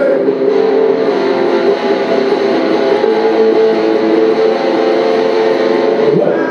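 Electric guitar strummed steadily through an amplifier, a continuous wash of ringing chords.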